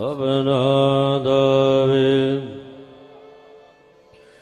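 A man's voice chanting a line of Gurbani in the sung recitation of the Hukamnama, drawing out long, steady held notes. It fades away about two and a half seconds in.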